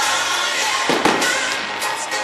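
Fireworks bursting over loud music: two sharp bangs about a second apart, the first at the start and the second about a second in.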